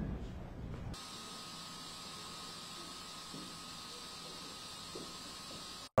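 Small fan of a jacket's built-in personal cooling unit running with a steady hiss and a faint steady whine. It starts about a second in and cuts off just before the end.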